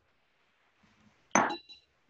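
Near silence, then about a second and a half in a single sharp clink of small hard cosmetic containers knocking together, with a brief ringing after it, as makeup products are searched through.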